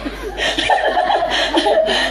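Audience laughing together at a joke, many voices at once.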